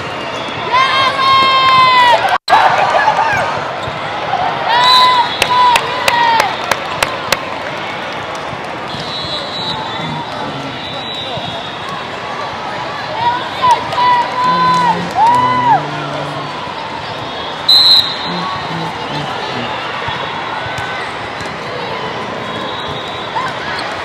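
Sneakers squeaking on a sport court during a volleyball rally, in short repeated squeals, with sharp slaps of hands on the ball clustered about five to seven seconds in, over the steady crowd noise of a large hall.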